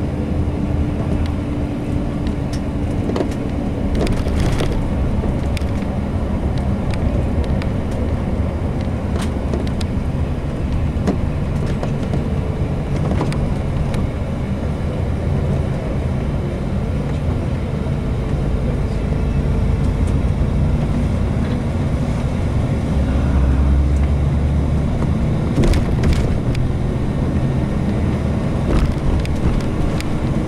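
Steady low rumble of a coach bus's engine and tyres, heard from inside the passenger cabin while it drives along, with a faint droning tone and a few brief clicks or rattles.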